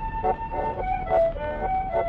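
Accordion duet playing a Boston waltz: held reedy melody notes over short, evenly repeated accompaniment chords. Played from an acoustic 78 rpm record of 1911, so the sound is narrow and dull, with no high treble.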